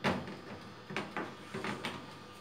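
A metal baking tray clattering as it is handled and slid onto the wire rack of a countertop electric oven: one loud clank at the start, then a few lighter knocks and scrapes about a second in.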